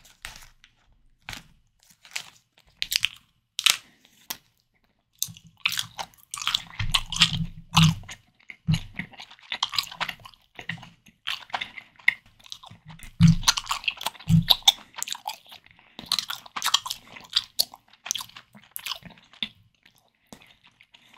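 Close-miked chewing of a jelly candy, dense and irregular, starting about five seconds in. Before it come a few sharp crinkles and clicks as the candy's wrapper is peeled open.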